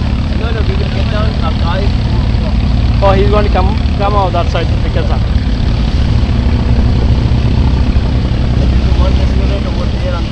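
Engine of a wooden abra water taxi running steadily under way, a low drone. Voices talk over it about the first second and again around three to five seconds in.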